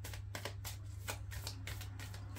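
A deck of tarot cards being shuffled by hand: a quick run of soft card clicks, about five a second, over a steady low hum.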